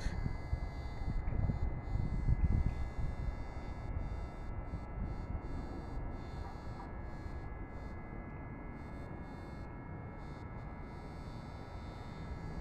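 Distant airplane flying overhead: a low, steady rumble, a little louder in the first few seconds.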